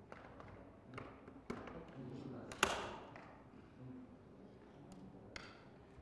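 Faint murmur of off-camera voices in a large room, with scattered knocks and clicks; the loudest, a sharp knock, comes about two and a half seconds in.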